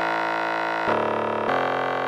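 Audjoo Helix software synthesizer playing a preset: a sustained, steady synth sound with many overtones, moving to new notes about a second in and again half a second later.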